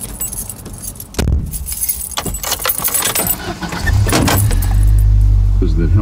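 Car keys jangling, with clicks, over the first few seconds, while a car's low rumble builds; about four seconds in, the engine's steady low hum grows louder.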